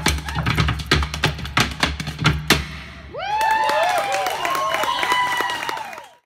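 Flatfoot clogging steps and body-percussion claps and slaps in a fast rhythm, ending on a final strike about two and a half seconds in. The audience then applauds, cheers and whoops.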